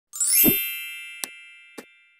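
Logo-intro sound effect: a bright, many-toned chime that opens with a short rising sweep and a low thud, then rings on and slowly fades. Two light clicks sound over the fading ring, a little over a second in and again near the end, typical of a subscribe-button and bell click effect.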